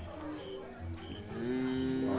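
A person's voice holds one long, steady, low hum or drawn-out vowel, starting a little after a second in. Faint short high chirps repeat about twice a second behind it.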